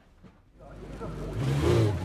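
A racing motorcycle engine fades in from near silence about half a second in and grows louder. It peaks near the end, where a rush of wind sweeps past.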